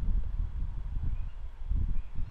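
Low, uneven rumbling noise picked up by the narration microphone, with no speech and no distinct event.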